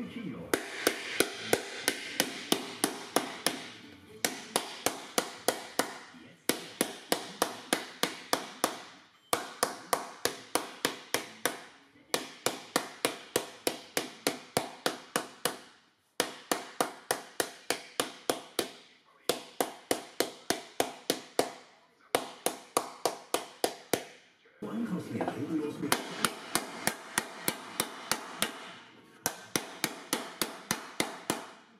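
Rapid blows of a round hard wooden mallet on an aluminium sheet shell, about four strikes a second in runs of a few seconds with short breaks, stretching the sheet into a bowl shape.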